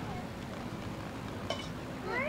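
Steady outdoor background hiss on an old home-video recording, with one short click about a second and a half in.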